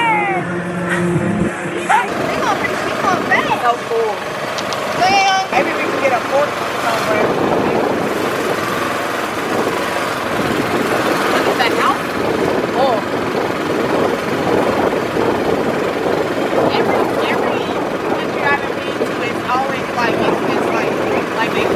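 Riding in an open-sided cart: a steady rush of motor and road noise, with scraps of indistinct voices now and then.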